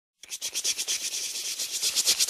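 The opening of an R&B track: high, hissing percussion like a shaker plays a fast, even rhythm of about ten hits a second. It starts right after a brief silence and swells within the first half second.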